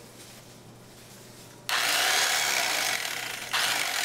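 A corded electric carving knife switches on a little under halfway through, its motor buzzing loudly as the blades saw through cooked meat. It stops for a moment and starts again near the end.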